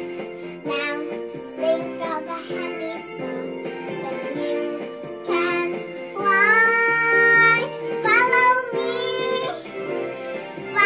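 A young girl singing an English children's song over a backing music track, holding one long note in the middle.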